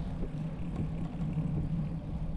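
Steady low rumble of wind on the microphone and tyres rolling on a paved bike path while cycling.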